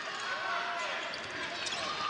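Basketball being dribbled on a hardwood arena court, under the steady murmur of the crowd and faint shouts from players and fans.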